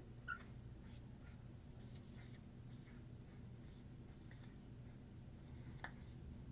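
Dry-erase marker faintly squeaking and scratching on a whiteboard in short strokes as an arrow and letters are drawn, over a quiet low room hum.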